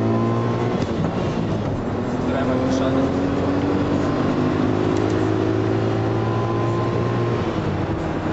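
The Golf's turbocharged VR6 engine, heard from inside the cabin, pulling hard at high speed with its pitch climbing slowly through one gear. Near the end the pitch breaks and drops.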